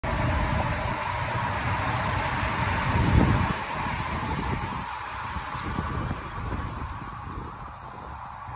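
Steady motor-vehicle running noise with a heavy low rumble and a brief swell about three seconds in, easing off somewhat after that.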